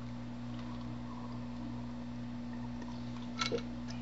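A steady low electrical hum in a quiet room while a man drinks from a glass, with one short soft sound about three and a half seconds in.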